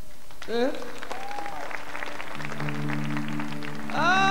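Live audience applauding, with a rising voice-like shout about half a second in. About halfway through, the orchestra comes in with a steady, low sustained chord under the applause.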